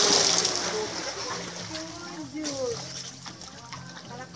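A big splash of someone jumping into a swimming pool, loudest at the start and dying away over about a second as the water settles.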